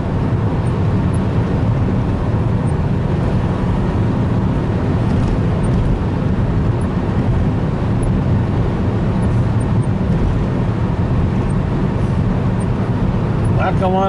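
Steady low rumble of a car cruising at highway speed, heard from inside the cabin: tyre and road noise.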